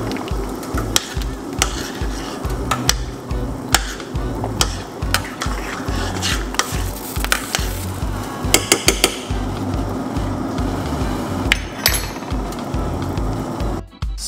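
A metal spoon clinks and scrapes irregularly against a stainless steel saucepan while banana peel tea is stirred as it comes to the boil. Background music with a steady low beat plays underneath.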